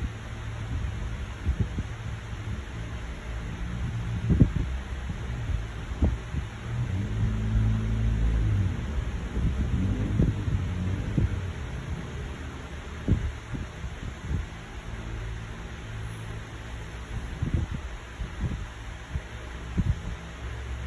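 Low, uneven rumbling and a few soft thumps from a hand-held phone's microphone being brushed and handled, over a steady low hum.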